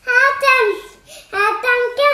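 A high, child-like voice singing in two short phrases, the pitch sliding up and down.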